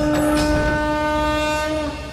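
A single long, steady horn-like tone with strong overtones, held at one pitch and ending near the end.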